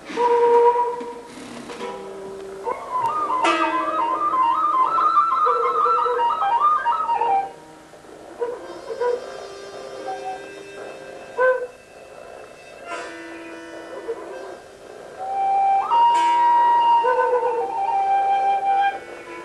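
Improvised music on small flute-like wind instruments, two players blowing held notes and, for a few seconds in the middle, a fast warbling run. A few sharp clacks sound among the notes.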